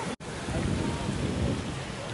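Wind buffeting a handheld camera's microphone, an uneven low rumble, with faint voices in the background. The sound drops out completely for a split second just after the start, where the footage is cut.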